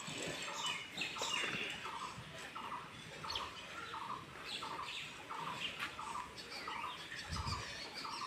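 A bird repeating one short note about three times a second, with other birds chirping higher and more irregularly; a brief low rumble near the end.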